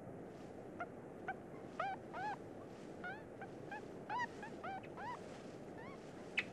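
Newborn yellow-bellied marmot pups squeaking in the nest: about a dozen short, high peeps, each rising and falling in pitch, coming in loose clusters over a faint hiss.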